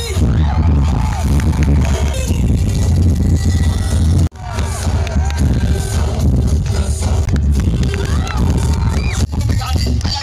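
Live band music played loud through a stage sound system, with heavy bass and a voice over it. The sound drops out abruptly for a moment about four seconds in.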